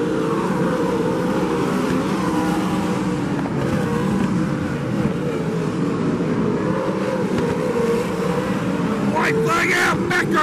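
A field of winged sprint cars' V8 engines running at race pace on a dirt oval, several engine notes overlapping and their pitch rising and falling as the cars go through the turns and past.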